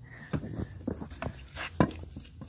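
Scattered light clicks and knocks of hands gripping and turning a new water pump, with one sharper knock near the end.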